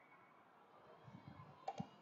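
Two quick computer mouse clicks near the end, a fraction of a second apart, over faint room tone.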